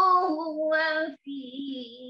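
A woman's voice chanting Qur'anic recitation (tilawah), drawing out long melodic notes. It breaks off briefly just past the middle, then comes back on a softer held note.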